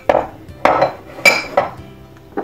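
Four short knocks and clatters of kitchen bowls, about half a second apart.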